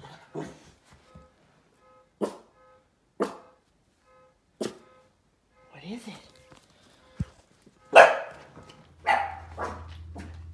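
Small terrier-type dogs barking in play: single sharp yaps every second or two, then a louder quick run of barks near the end.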